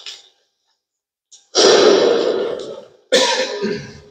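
Two loud coughs close to the microphone, about a second and a half in and again near three seconds, each trailing off in the church's echo.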